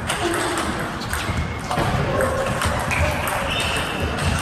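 Table tennis rally: the ball clicking sharply off the rubber bats and the table several times in quick alternation.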